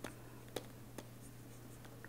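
Pen tip ticking and scratching on a writing surface as a word is handwritten: a few short, sharp ticks over a faint steady low hum.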